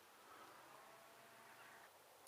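Near silence: faint outdoor background hiss.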